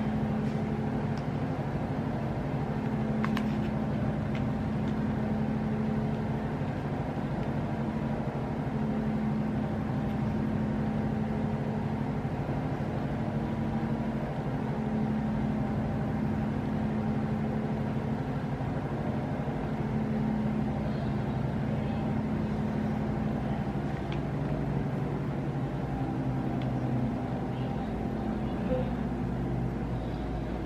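A steady low droning hum that holds the same pitch throughout, with a faint click about three seconds in.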